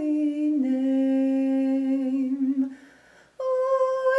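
A woman's voice singing a slow meditative chant in long held notes. The note steps down about half a second in, is held for about two seconds and fades; after a short breath pause a higher note begins near the end.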